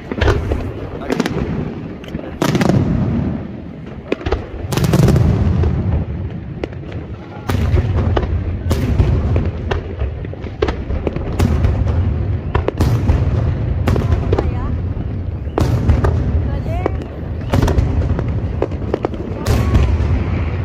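Aerial fireworks display: a rapid, irregular run of shell bursts and sharp bangs over a continuous deep rumble of explosions.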